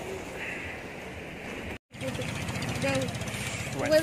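Steady background noise with faint voices, broken by a brief total dropout about two seconds in.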